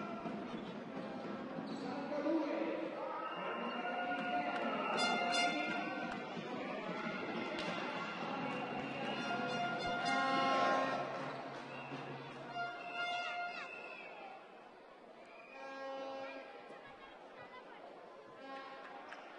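Indoor basketball arena ambience before a tip-off: music over the hall's speakers and crowd voices echoing in the hall, with occasional short squeaks of sneakers on the hardwood court. The sound drops away about three quarters of the way through.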